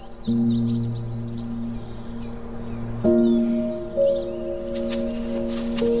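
Background score of sustained, soft held chords. The chord changes about three seconds in. Birds chirp faintly throughout.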